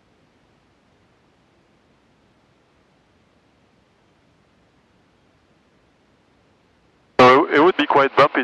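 Near silence on a cockpit headset-intercom feed for about seven seconds. Then a man's voice cuts in abruptly near the end, sounding narrow and radio-like.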